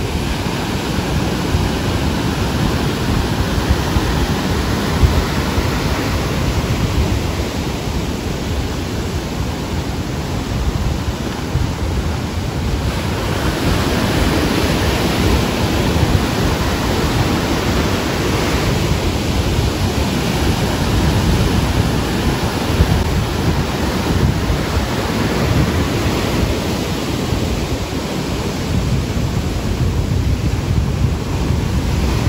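Ocean surf breaking and washing up on a sandy beach: a steady rush of waves that swells louder as bigger breakers come in, about halfway through and again a few seconds later.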